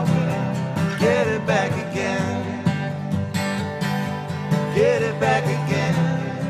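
Live acoustic country-folk music: strummed acoustic guitar with male voices singing a few drawn-out lines.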